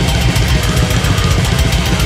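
Thrash metal band recording: heavily distorted electric guitars and bass over fast, dense drumming, loud and unbroken.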